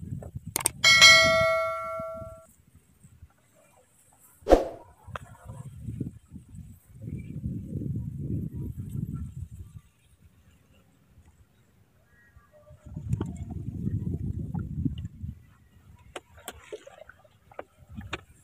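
A single metallic clang just under a second in that rings on for about a second and a half, then a second sharp knock a few seconds later, with stretches of low rumbling noise between.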